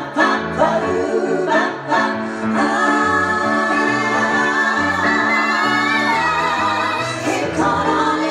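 Women singing in close harmony with a band: short sung notes over a moving bass line, then from about two and a half seconds in a long chord held with vibrato, before new notes start near the end.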